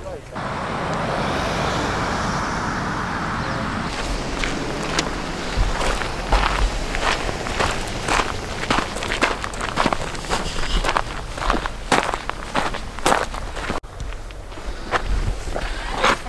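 Footsteps of hikers walking on a gravel trail, about two steps a second, starting a few seconds in and running for about ten seconds. Before them comes a steady hiss.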